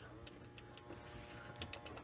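Faint scattered clicks from a hand pressing at a desktop computer's optical drive bay, over a low steady room hum; the clicks come thicker near the end.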